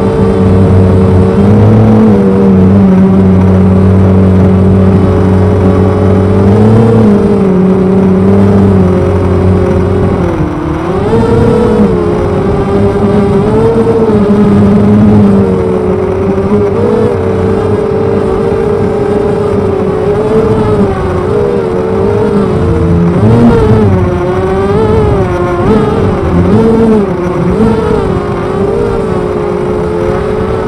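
Quadcopter's brushless motors and 6x3-inch carbon propellers whining through the onboard camera, the pitch wavering up and down with throttle changes. The owner finds these low-pitch props give too little thrust for the 900-gram frame.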